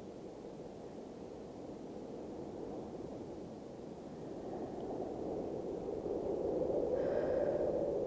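Low, rushing outdoor noise that swells louder over the second half.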